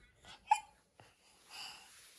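A toddler's single short, sharp hiccup-like catch of the voice about half a second in, followed by soft breathing.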